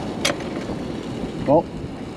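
Fish fillet sizzling in a cast iron skillet on a propane camp stove: a steady hiss, with one sharp click about a quarter second in.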